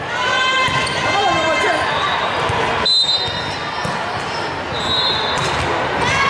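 Indoor volleyball play in a large echoing hall: players shouting calls, ball thuds, and short high sneaker squeaks on the hardwood court about three and five seconds in.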